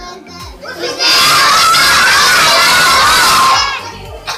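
A group of children shouting together for about two and a half seconds, starting about a second in and breaking off just before the end. It is loud enough to overload the recording.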